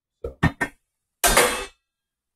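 Metal pan lid and frying pan clattering: three or four quick knocks, then a longer scraping clatter about a second in, as the lid is lifted and diced celery goes into the pan.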